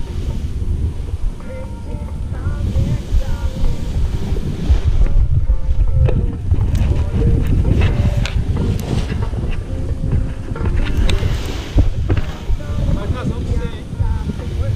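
Wind buffeting the camera's microphone in uneven gusts, with faint voices in the background and a few brief clicks in the middle.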